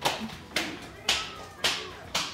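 A series of sharp, evenly spaced knocks or claps, about two a second, each with a short ringing tail.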